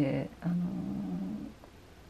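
A woman's voice: a word trails off, then a drawn-out, level hesitation sound of about a second, then quiet room tone.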